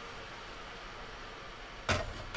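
Faint steady room hiss with one sharp tap near the end.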